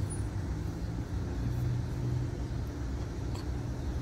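Car engine idling, a steady low hum and rumble heard from inside the cabin.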